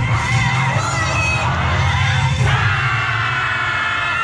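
Many voices shouting and cheering together over loud yosakoi dance music with a steady low bass, which thins out near the end.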